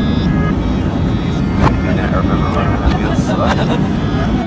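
Airliner cabin noise: a loud, steady low rumble of the plane in flight, with brief indistinct bits of voice over it.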